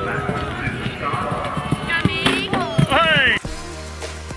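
Hoofbeats of a loose horse galloping on grass, under people's voices, with a loud rising cry just before the end. About three and a half seconds in it cuts sharply to music with a steady beat.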